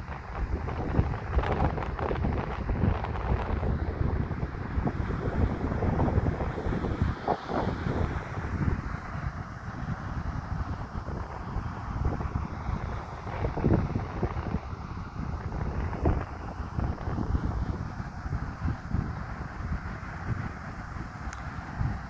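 Wind buffeting the phone's microphone, a rough low rumble that swells and drops in uneven gusts.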